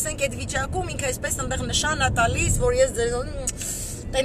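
A woman talking inside a car, over the low, steady rumble of the car being driven.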